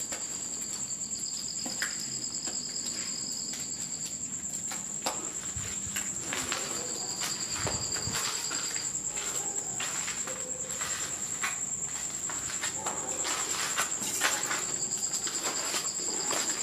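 Crickets trilling at night: one steady, high, pulsing trill runs throughout, and a second, lower trill comes and goes in spells of a few seconds. Faint scattered clicks sound under them.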